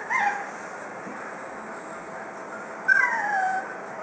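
Boston Terrier puppy whining: a short, high, falling whine at the start and a longer falling whine about three seconds in.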